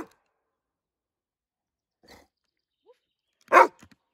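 A black Labrador barking on command: one loud, short bark about three and a half seconds in, after a couple of seconds of quiet.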